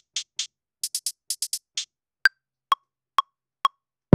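A drum-machine hi-hat pattern of short crisp ticks in a trap rhythm, which stops about two seconds in. It is followed by a one-bar metronome count-in at 129 BPM: four clicks, the first higher-pitched than the other three.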